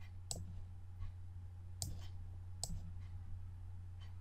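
Computer mouse clicking three times, sharp single clicks spaced a second or so apart, over a low steady hum.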